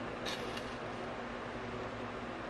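Steady fan-like hiss of the room, with a brief crisp crackle about a quarter of a second in from chewing a breaded fried chicken strip.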